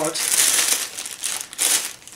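Clear plastic bag crinkling as it is handled and pencils are pulled out of it, an uneven rustle that comes and goes in strength.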